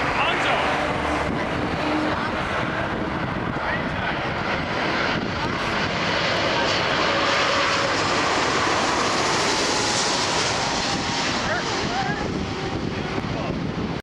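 Airbus A330-200 with Rolls-Royce Trent 700 turbofans on final approach, passing low overhead: a steady jet rumble and whine. The sound grows brightest and hissiest about two-thirds of the way through as the airliner passes closest.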